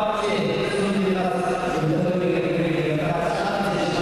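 Several men's voices chanting in long held notes, echoing in a large sports hall.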